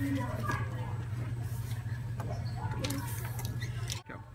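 Steady low hum with faint, indistinct voices and small handling clicks in a room.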